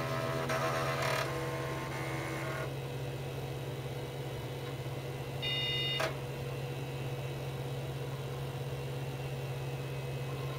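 Old Packard Bell 386 PC booting: a steady hum from the running machine, with a short mechanical rattle from the disk drives in the first second or so as they are checked. Around six seconds in, a brief high whine ends in a sharp click.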